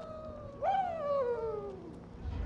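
A person's long excited whoop that jumps up in pitch and then slides down over about a second, following the tail of a similar cry.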